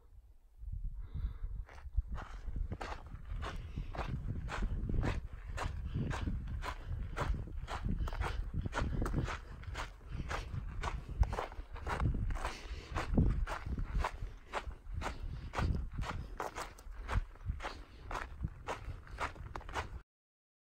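Hiker's footsteps on a dirt and gravel trail, an even walking rhythm of about two to three steps a second that starts about a second in, over a low rumble.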